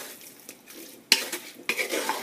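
A spoon stirring pieces of raw, seasoned conch in a metal pan: soft scraping, with a sharp knock against the pan about a second in, then a few smaller knocks and scrapes.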